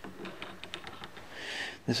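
Light clicks and taps of small metal parts being handled at a lathe's quick-change tool post, followed by a short hiss just before speech begins.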